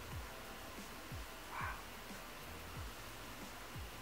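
Faint, soft pats of a makeup sponge dabbing foundation onto the face, coming irregularly about once or twice a second.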